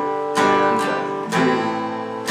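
Acoustic guitar strummed in a slow, counted strumming pattern: three strums about half a second apart, the chord ringing on between them.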